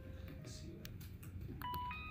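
Electronic beeps from a breadboard microcontroller circuit: a steady tone starts about one and a half seconds in, then steps up in pitch as a short sequence of notes, over a low electrical hum. A few sharp clicks come shortly before the tones begin.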